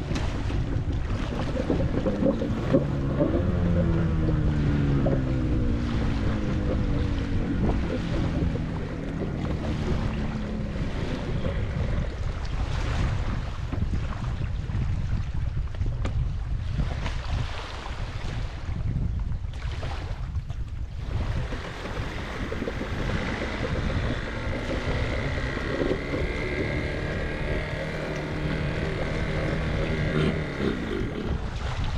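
Two-stroke engine of a 1984 surf jet running, its pitch sliding down several times in the first third and holding steadier near the end, under heavy wind noise on the microphone and water sounds.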